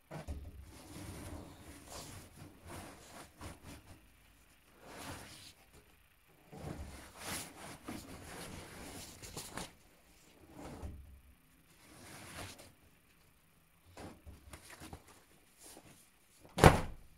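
Damp percale cotton bedsheets being pulled and untangled by hand from a top-load washing machine drum: faint, irregular rustling of wet fabric in bursts with short pauses.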